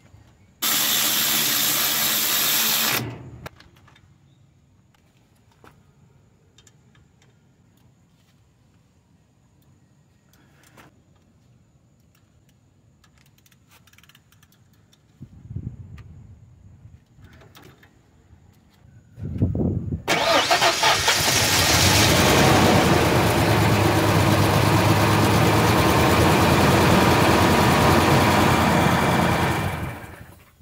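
Cordless ratchet run briefly on a brake caliper bolt at the start, then small clicks and knocks of metal parts being handled. For the last ten seconds a loud, steady mechanical running sound takes over.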